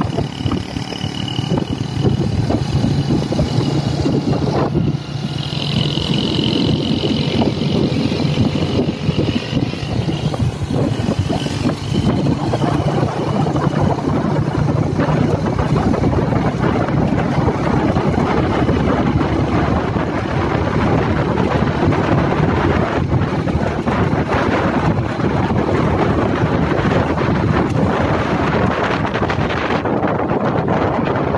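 Wind buffeting the microphone on a moving motorbike, over the steady running of a motorbike engine.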